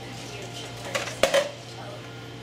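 Small metal cookie tin knocked off a shelf by a chipmunk, clattering against the stacked tins and landing on a wooden floor: a quick run of sharp clanks with a short metallic ring, about a second in.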